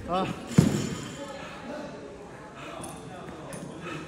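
A short burst of voice, then a single sharp thud on the rubber gym floor about half a second in. After that only low room sound with a few light knocks.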